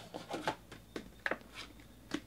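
Hands handling a cardboard trading-card box, cardboard rubbing and sliding, with a few short scrapes and light taps.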